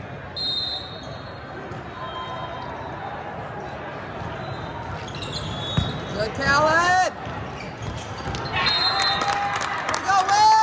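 Indoor volleyball rally: a referee's whistle blows about half a second in, the ball is struck with sharp smacks, a player shouts about seven seconds in, and a second short whistle sounds about nine seconds in, all over steady crowd chatter.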